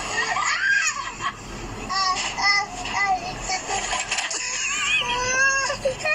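A young child's voice making high-pitched calls and squeals in short runs, with longer sliding cries near the end.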